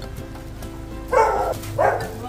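Two short dog barks in quick succession a little past the middle, over steady background music.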